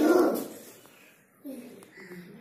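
A voice tails off in the first half second, then a short, faint voiced sound about one and a half seconds in; otherwise quiet.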